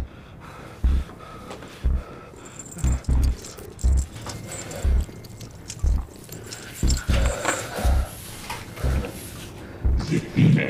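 Film soundtrack: a deep thudding pulse about once a second, some beats doubled like a heartbeat, under a tense, low score. Near the end a man's strained, growling breaths join it.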